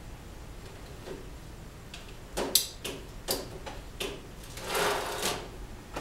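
Metal parts being handled on a steel rack frame: a few short clicks and knocks, the loudest about two and a half seconds in, then a half-second scrape near the end.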